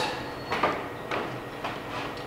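Footsteps on a hard floor, three even steps about half a second apart.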